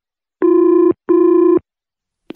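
Telephone ringing: one double ring of two identical short electronic tones, each about half a second long, with a brief gap between them.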